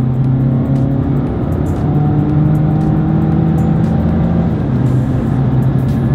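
Mazda2 GT's 1,496 cc four-cylinder petrol engine pulling hard under a full-throttle kick-down in sport mode, heard from inside the cabin. Its note holds high and steps down in pitch about four and a half seconds in as the automatic gearbox shifts up.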